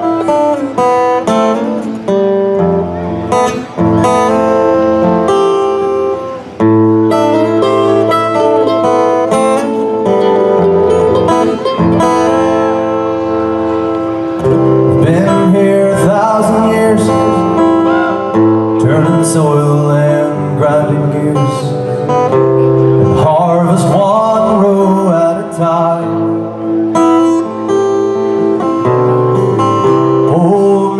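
A live band playing a country-style song's opening with strummed acoustic guitar, mandolin, bass guitar and drums, loud and continuous.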